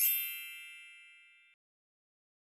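A bright, sparkling chime sound effect: a quick glittering shimmer of very high tones, then a ringing chord of bell-like notes that fades and cuts off suddenly about a second and a half in.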